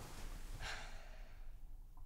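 A person sighing: one short, breathy exhale about half a second in, over a faint low room hum.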